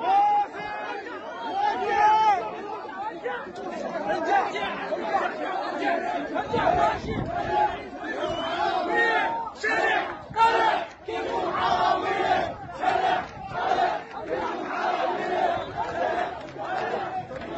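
A crowd of protesters shouting, many raised voices overlapping one another.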